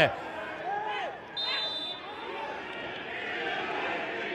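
A referee's whistle blown in one short, shrill blast about one and a half seconds in, stopping play, over players' shouts and the open hum of a football stadium.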